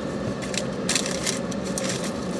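Eating sounds: a mouthful of burger being chewed, with several brief crackles of the paper wrapper being handled, over a steady low hum inside a car cabin.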